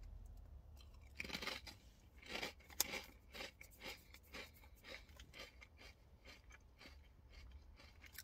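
Ridged potato chip being bitten and chewed, faint crunches: the loudest come in the first few seconds, then softer crunches continue at about two a second.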